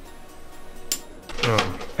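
A single sharp click as workshop tools are handled, about halfway through, followed by a brief sound of a man's voice near the end.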